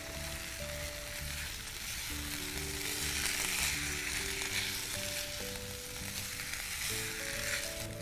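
Green peas, spice paste and rice sizzling steadily in oil in a nonstick pan while being stirred and mixed with a silicone spatula.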